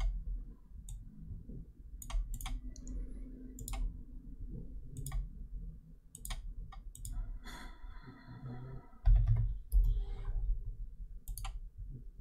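Computer mouse clicking: a dozen or so single, irregularly spaced clicks. A louder low thump comes about nine seconds in.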